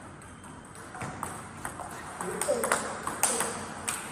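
Table tennis rally: a string of sharp clicks as the celluloid ball is struck by the bats and bounces on the table, about six hits spread over a few seconds.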